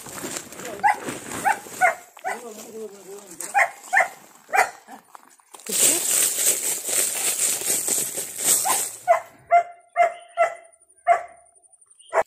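A dog barking in short repeated barks: one run in the first few seconds and another of about five barks near the end. In between, for about three seconds, soil poured from a sack into a plastic drum makes a loud, rushing hiss.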